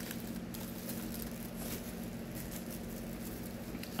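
Soft chewing with faint scattered clicks over a steady low hum.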